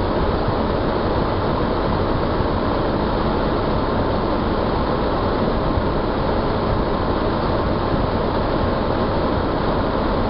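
A 4x4's engine running steadily, heard from inside the cab as a constant low rumble and rattle, with the vehicle idling or barely creeping.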